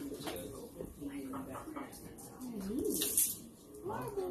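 Soft, low, wordless vocal sounds from a person that slide up and down in pitch, with a short rustle about three seconds in.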